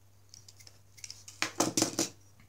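A craft knife blade shaving and scraping the broken plastic inlet of a LEGO pneumatic cylinder flat. A few faint ticks come first, then a quick run of louder scrapes in the second half.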